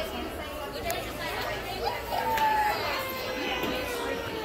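Indistinct chatter of several people talking in a busy store.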